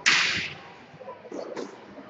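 Squash ball struck hard with a racket: one sharp crack that rings in the walled court for about half a second, followed by a few faint taps.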